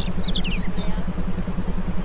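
Meditation background track: a steady low tone pulsing about a dozen times a second, with a few short, high, falling chirps shortly after the start.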